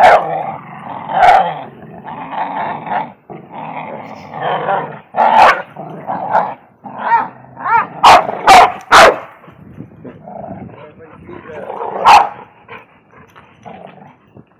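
Two pit bull-type dogs play-growling as they tug and wrestle over a rope toy, with a run of loud barks a little past the middle.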